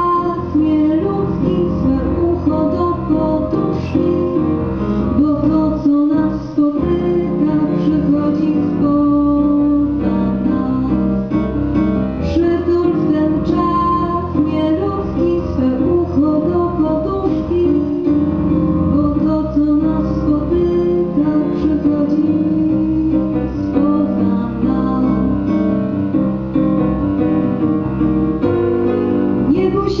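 A young woman singing a song into a microphone, amplified through a PA, with instrumental accompaniment.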